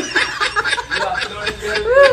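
A man laughing in short, repeated chuckles.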